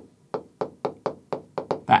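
Stylus pen tapping and clicking on the glass of a large touchscreen as letters are handwritten, a run of short sharp taps about four a second.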